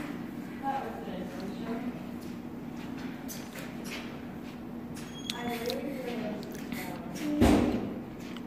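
Faint voices of other people carrying through a large hallway over a steady low hum, with one short, loud burst of noise near the end.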